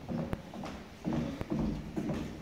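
Hard-soled footsteps on a wooden floor, a few sharp steps.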